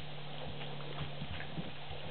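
Golden retriever puppies scrambling to nurse under their standing mother: scattered soft knocks and bumps with faint shuffling, over a steady low hum.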